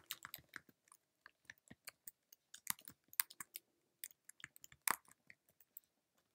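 Computer keyboard being typed on: irregular key clicks, a few a second, with one louder keystroke a little before the end.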